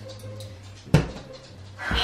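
A sigh, then a single sharp pop about a second in. A louder, hissy sound starts just before the end.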